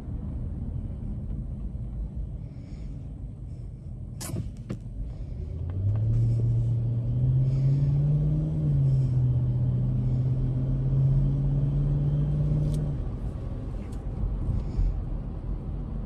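Chrysler 300's engine and road rumble heard from inside the cabin. About six seconds in, the engine note swells and rises as the car accelerates, dips briefly, holds steady, then fades near the end. A single sharp click sounds about four seconds in.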